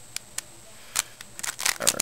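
A 3x3 Rubik's Cube's plastic layers being turned quickly by hand, a run of sharp irregular clicks and clacks.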